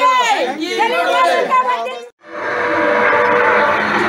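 A group of campaigners chanting political slogans together. About halfway through the sound cuts off abruptly, and steady street noise of a procession follows: crowd chatter mixed with motor vehicles.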